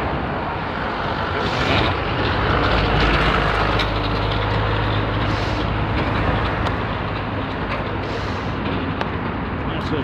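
A truck driving past on the road, its engine hum and tyre noise loudest about three seconds in, over steady traffic noise.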